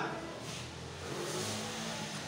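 A motor vehicle's engine running, a low hum with a wash of noise that swells about a second in and eases off.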